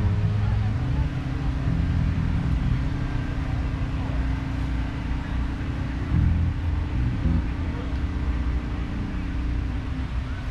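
Open-air background of indistinct voices over a low rumble, with a steady hum that sets in about a second in and holds.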